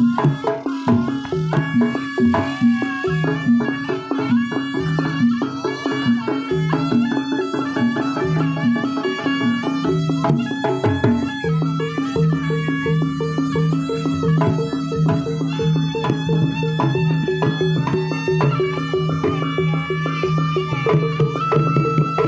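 Jaranan gamelan ensemble playing: kendang hand drums beat a dense, quick pattern over a steady repeating low pulse of gongs and kettle gongs, with a high wavering melody above.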